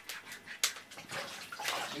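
Small wood fire crackling in a stove, with a few sharp pops over a soft hiss.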